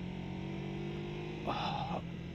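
Kawasaki ZZR250's parallel-twin engine running at a steady cruise, a low even drone heard under the helmet camera's wind noise. A brief breathy sound comes near the end.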